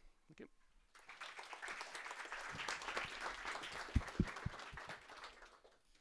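Audience applauding, starting about a second in and fading out near the end, with a few dull thumps partway through.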